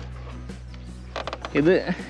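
Yamaha motorcycle engine idling with a steady low hum and fine mechanical ticking; a brief voice is heard near the end.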